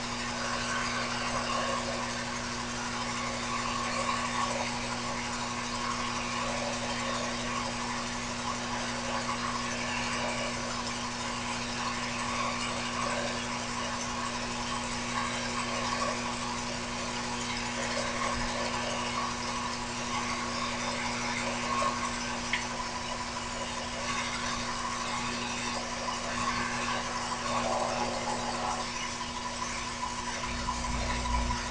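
Mini lathe running steadily while turning a bronze workpiece: a constant motor and gear hum with an uneven, scratchy hiss of the tool cutting over it.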